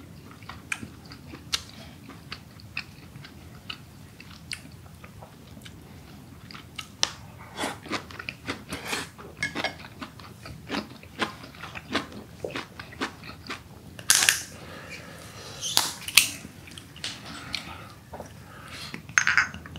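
Close-miked chewing of braised aged kimchi and pork: scattered wet mouth clicks and smacks, busier from about halfway, with a few louder knocks near the end.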